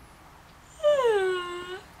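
A woman's voiced yawn: one drawn-out vocal sound, falling in pitch and lasting about a second, starting a little under a second in.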